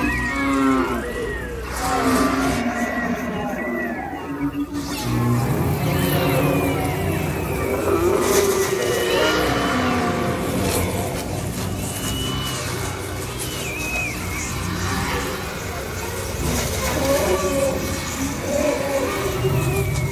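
Soundtrack of a night-time water-and-light show playing over loudspeakers: music mixed with sustained tones that slide up and down in pitch.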